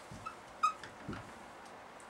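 Dry-erase marker squeaking on a whiteboard while a word is written: a few brief faint squeaks, the clearest a short high squeak about two-thirds of a second in.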